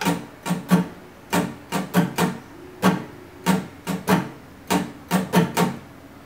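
Epiphone acoustic-electric guitar strummed in a repeating down, up-up, down, up-up, down-up rhythm, the pattern starting over about every three seconds.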